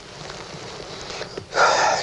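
A man's sharp, loud intake of breath, brief and just before he speaks again, after a faint steady background hiss.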